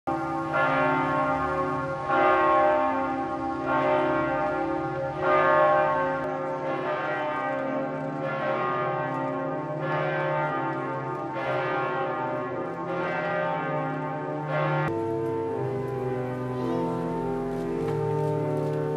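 A church bell tolling slowly, about one strike every second and a half, each strike ringing on: a funeral toll. About fifteen seconds in the tolling gives way to sustained music.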